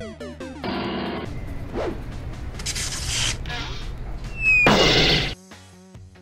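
Short 8-bit video game music gives way to a run of noisy crash and smash sound effects. The loudest burst comes about five seconds in, with a short falling whistle just before it, and stops abruptly. Quieter pitched music begins near the end.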